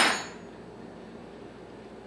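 A dropped metal butter knife clattering on a hard tabletop, its sound fading within the first half second, then quiet room tone.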